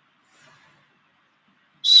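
Near silence, with a faint brief sound about half a second in; near the end a man starts to speak, beginning with a hissing 's'.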